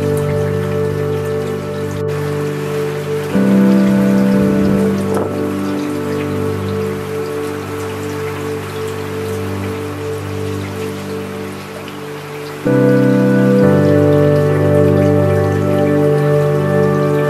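Steady rain falling, with a continuous hiss, mixed with slow ambient music of sustained chords. The chords change about three seconds in and again near the end, and the music gets louder at each change.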